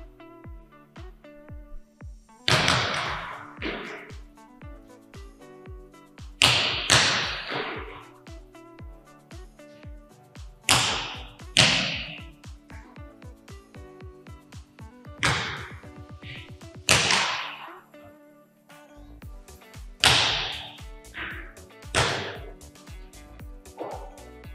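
Volleyball serves struck hard by hand. Loud sharp hits echo through the gym, about ten of them in pairs roughly a second apart, over background music with a steady beat.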